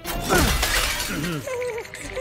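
Cartoon sound effect of a block of ice shattering: a sudden crash of breaking ice right at the start that rings out for about a second. Background music with a wavering melody comes in near the end.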